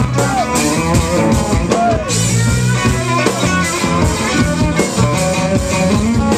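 A live rock-soul band playing loudly, electric guitars over a drum kit.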